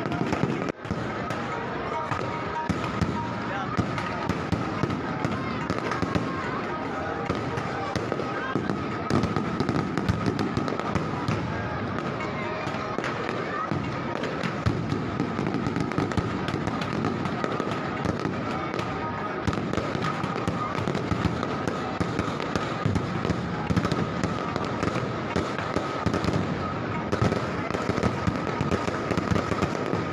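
Fireworks crackling and popping in quick, uneven succession over the voices of a large crowd. A steady high tone runs underneath.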